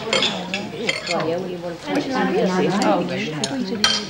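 Cutlery clinking and scraping on crockery plates as several people eat at a table, with voices talking in the background and a sharp clink near the end.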